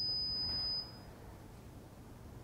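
A steady, high-pitched electronic beep from the security system prototype's buzzer, signalling a wrong password entry. It cuts off a little under a second in.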